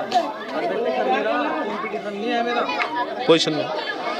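Crowd chatter: many voices of children and men talking over one another.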